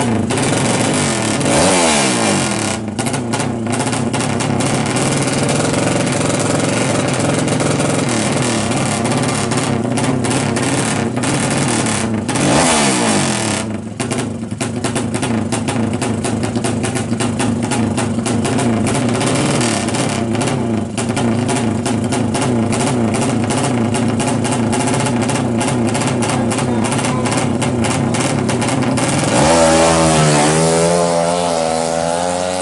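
Drag-race motorcycle engine running hard at the start line, held at high revs with the throttle worked. The revs fall away twice, about two seconds in and about twelve seconds in, then climb as the bike launches off the line at the very end.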